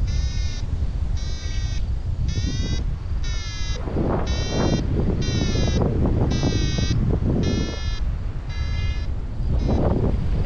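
A paragliding variometer beeping, about ten short pitched beeps roughly a second apart: the climb tone that signals the glider is rising in lift. Wind rushes on the microphone under the beeps and grows louder from about four seconds in.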